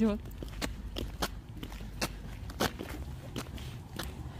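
Irregular footsteps and light knocks on a hard floor, over a steady low hum of room noise and faint voices.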